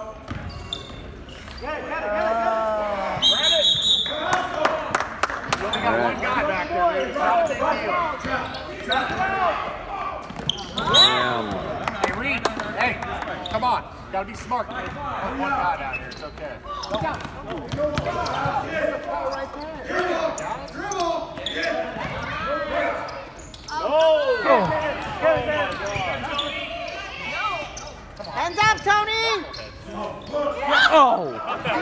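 Basketball bouncing on a hardwood gym floor, mixed with scattered voices calling out, all echoing in the large gym hall.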